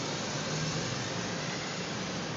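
Steady background noise, an even hiss with a faint low hum underneath.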